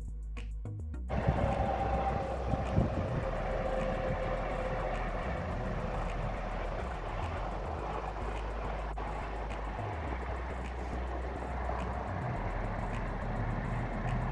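Steady road and wind noise of a moving vehicle, with low background music underneath.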